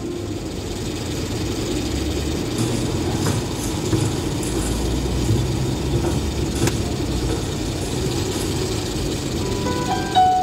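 Road and engine noise inside a moving car's cabin: a steady low rumble, with two sharp clicks, one about three seconds in and one near seven seconds.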